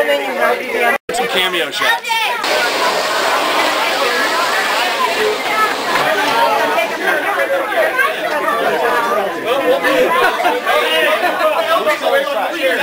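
Several people chattering and talking over one another, no single voice standing out. The sound drops out completely for a split second about a second in.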